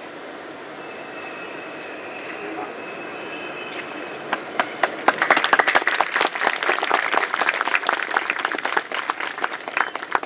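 Audience clapping. It starts scattered about four seconds in, quickly fills out into many quick, irregular claps and keeps going. Before it there is only a quiet room hum with a faint steady high tone.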